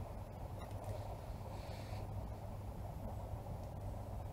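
Quiet outdoor background: a faint, steady low rumble with no distinct events.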